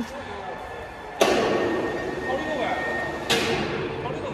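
Two sudden bursts of loud workshop noise. The first comes about a second in and holds for about two seconds with a steady high tone running through it. The second comes near the end and fades.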